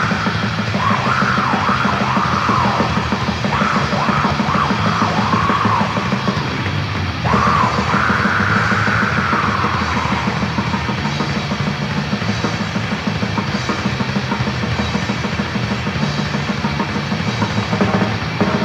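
Raw, lo-fi black metal recording: fast, dense drumming under distorted guitars, with harsh shrieked vocal lines over the first ten seconds or so.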